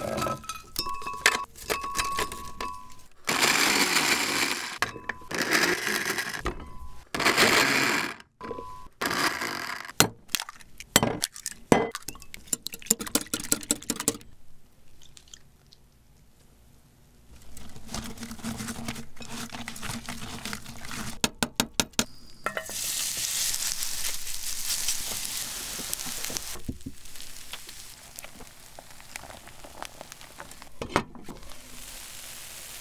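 A glass-jar kitchen blender crushing dry ramen noodles in several short bursts, followed by clinks and taps of utensils on a glass mixing bowl. Near the end, a few seconds of steady sizzling from the noodle-and-egg crust frying in a pan.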